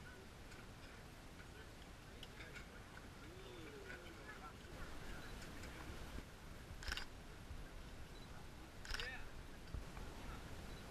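Faint outdoor background with a steady low rumble, a few light clicks, and two short, sharp knocks about seven and nine seconds in.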